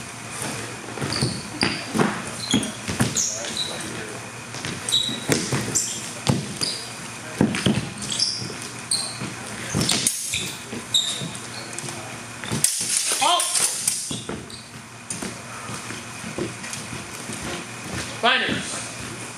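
Athletic shoes squeaking in short chirps and feet thudding on a wooden floor as longsword fencers move, with scattered sharp knocks echoing in a large hall.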